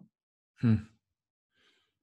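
A man's short, breathy "hmm" in conversation.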